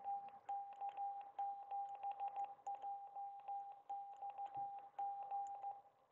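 Morse code sidetone from an FX-4CR ham transceiver: a single steady mid-pitched beep keyed on and off in dots and dashes, with faint paddle clicks, as characters are sent into a CW memory message. It is sent a little too fast for the radio to take every character.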